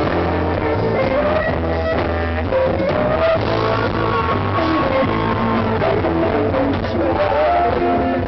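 Live rock band playing loud and steady: electric guitars over a bass line and drums.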